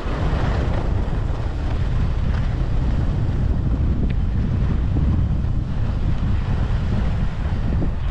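Wind buffeting the microphone of a skier moving downhill: a steady low rumble with a rushing hiss over it.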